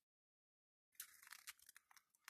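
Faint crunching and crackling of dry leaf litter and scrub as someone moves through the bush, starting about a second in as a quick run of small crackles.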